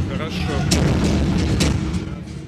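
Loud, heavy low booming from the arena's sound system, with two sharp hits about a second apart and a voice briefly at the start.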